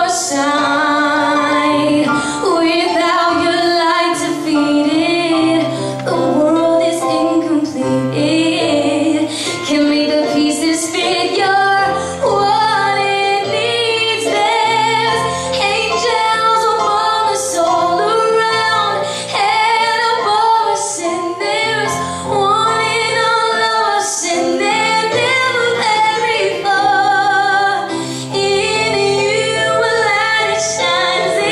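A woman singing a slow song into a microphone, amplified over instrumental accompaniment, with a wavering vibrato on her held notes.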